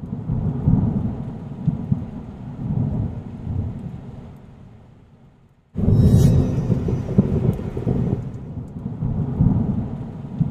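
Thunder rumbling over steady rain. The rumbling fades away over several seconds to near silence, then a sudden sharp crack of thunder a little past the middle sets off loud rumbling again.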